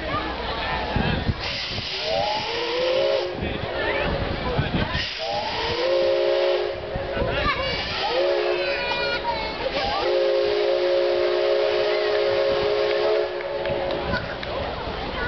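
Steam locomotive whistle sounding a chord of several notes in a series of blasts, the last and longest lasting about three seconds near the end, with bursts of hissing steam between the early blasts.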